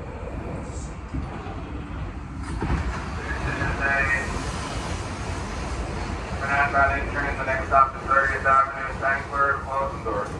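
Subway train pulling out from the far track of an elevated station, its rumble and rail noise building from about two and a half seconds in and running on as it leaves.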